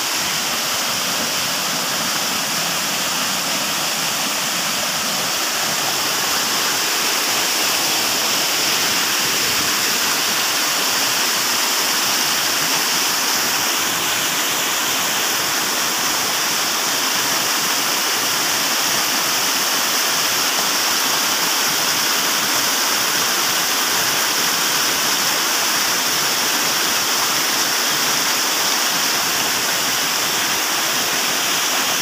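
Small waterfall pouring over rocks into a pool: a steady, unbroken rush of water, slightly louder from about six seconds in.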